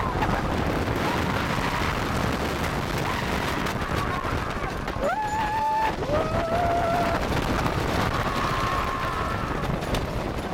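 White Cyclone wooden roller coaster train running fast over its wooden track, a steady loud rumble and clatter of wheels. Riders scream in long held cries over it, most clearly about five and six seconds in.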